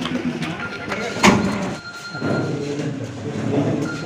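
Several people talking over one another in the background, with a single sharp knock just over a second in.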